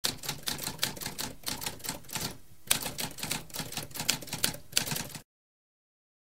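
Typewriter being typed on: a quick run of keystrokes, several a second, with a brief pause about halfway through. The typing cuts off suddenly a little after five seconds.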